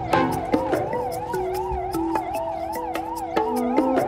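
Emergency vehicle siren warbling up and down about three times a second, over dramatic background music with held notes that step in pitch and light ticking percussion.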